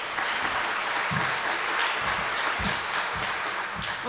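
Audience applauding steadily in a large hall, a dense patter of many hands clapping.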